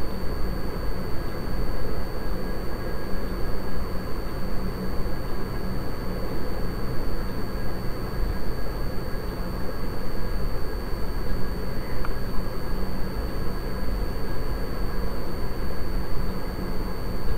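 Steady background noise: a low rumble and hiss that holds level throughout, with a faint steady high-pitched whine and no distinct events.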